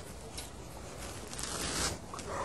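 Faint rustling and scraping of clothing fabric close to the microphone, with a few light scratches.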